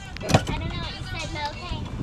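Golf cart pulling away with a low steady rumble, a sharp knock about a third of a second in, and a faint voice after it.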